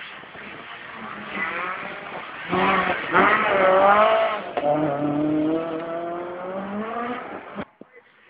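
Rally car engine revving hard through a corner, its pitch climbing and dropping several times, loudest about three to four seconds in. The sound cuts off suddenly near the end.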